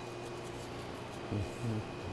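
Quiet kitchen room tone with a steady low hum, broken by two short, low murmurs of a voice a little past the middle.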